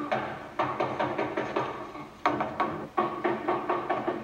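Rapid knocking on a wooden door, in three quick runs of strokes.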